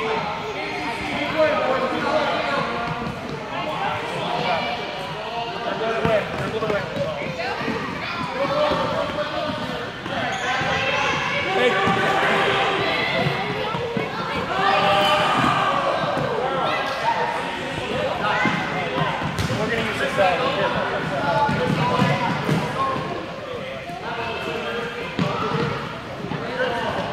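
Many children's voices chattering and calling over one another in a gymnasium, with balls thudding and bouncing on the hardwood floor.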